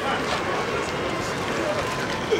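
Indistinct voices of people talking quietly over a steady rush of outdoor background noise.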